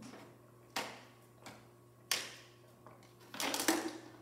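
Drinking from a plastic water bottle: two sharp crackles about one and two seconds in, then a quick run of clicks near the end as the bottle is handled.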